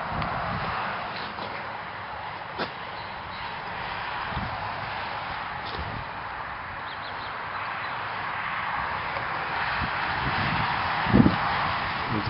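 Steady outdoor background hiss, with a single sharp click about two and a half seconds in and a soft low thump near the end.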